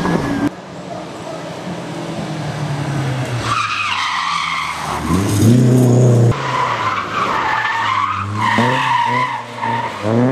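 Historic rally cars driven hard one after another on a loose gravel stage. The engines rev up and down through the gears, and gravel crunches and sprays under the sliding tyres. The loudest moment is a car accelerating about five seconds in, its engine note rising until it cuts off suddenly.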